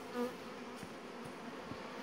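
Honey bees buzzing in a steady hum around an open hive. One bee passes close about a quarter-second in, with a brief louder buzz.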